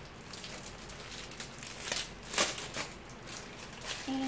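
Crinkling and crackling of a plastic sheet-mask packet being handled, a run of small irregular crackles with the loudest about two and a half seconds in.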